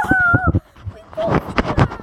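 A young child's high-pitched squeal: one wavering held note that stops about half a second in, then a few short vocal sounds.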